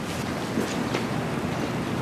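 Steady rushing noise of outdoor street ambience, with no clear single event standing out.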